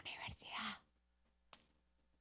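A faint, breathy, whisper-like voice for less than a second, then near silence broken only by one faint click.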